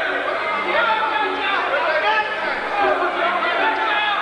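Crowd of spectators talking and shouting at once, many voices overlapping in a steady hubbub.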